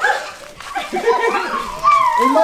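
A high-pitched voice making short, wavering vocal sounds that rise and fall in pitch, starting about half a second in and growing louder toward the end.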